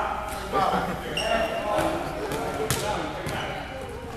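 A basketball bouncing a few times on a gym floor, the sharpest bounce a little before three seconds in, among voices of players and spectators calling out in the echoing gym.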